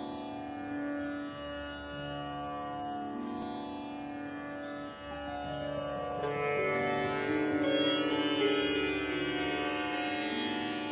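Sitar playing a slow alaap, long ringing notes that glide in pitch between one another over a low drone; the playing grows a little louder and busier about six seconds in.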